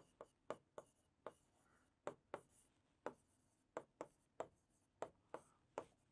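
Marker pen writing on a board: a string of faint, short strokes and taps, irregularly spaced, about two or three a second.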